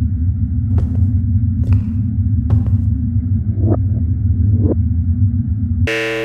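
Low, steady rumbling drone from the film's sound design, broken by scattered short clicks and crackles about once a second. It cuts off suddenly at the very end.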